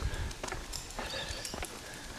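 Footsteps on a concrete footpath: a few light, irregular taps over a low outdoor background.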